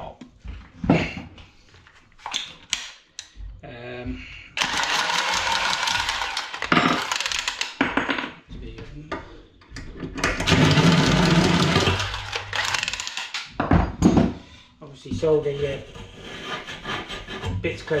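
Copper pipe being cut with a handheld pipe cutter turned around it: two spells of a few seconds of steady scraping, with short knocks from the pipe and tool being handled before and between them.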